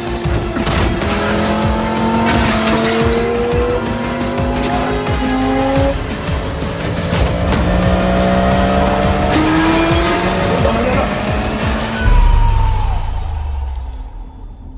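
Tense film score of layered held tones and sharp percussive hits, mixed with a sports car's engine. A deep boom comes about twelve seconds in, and the sound thins out near the end.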